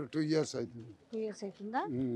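Speech only: a man's voice talking into a handheld microphone.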